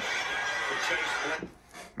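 Playback of a rugby league highlights broadcast: steady crowd noise with faint commentary, cut off suddenly about one and a half seconds in as the video is paused.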